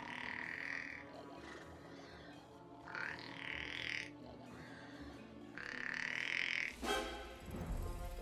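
Orchestral film score music, broken by three loud, short high-pitched cries or effects about a second each, near the start, about three seconds in and about six seconds in.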